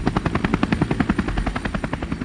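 Rapid, even chopping pulses, about a dozen a second, laid over the end card as an outro sound effect.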